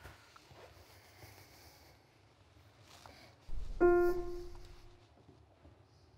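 A single note struck once on a concert grand piano in its middle register, dying away over about a second, just after a low thump from handling the instrument. It is a test note while a felt strip is being set between the strings so that only one string per key sounds, in preparation for setting the temperament.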